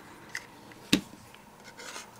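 Quiet handling of paper pieces and a hot glue gun on a craft mat. There is a faint rubbing and scraping, and one sharp click about a second in.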